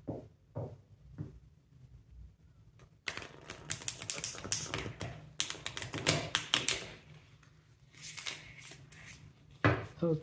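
Tarot deck shuffled by hand: a few soft taps as packets of cards are cut, then, about three seconds in, a riffle shuffle of rapid card flicks lasting about four seconds. A shorter burst of flicks comes near the end.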